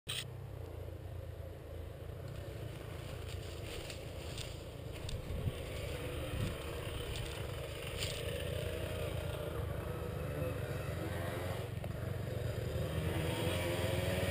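Off-road vehicle engine idling steadily, with a few light knocks in the middle. The engine note wavers and grows slightly louder toward the end.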